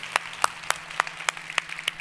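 Audience applauding, with sharp single claps standing out about three times a second over the steady patter of many hands.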